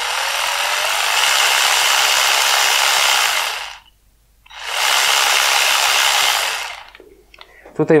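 Yato YT-82902 12-volt cordless impact ratchet running free with no load, in two runs: a first one of about four seconds that builds up early on, then a short stop, then a second of about two seconds. The motor speed follows how far the trigger is squeezed.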